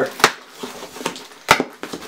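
Cardboard shipping box being pulled open by hand, its flaps and packing tape crackling, with two sharp cracks, one just after the start and one about a second and a half in.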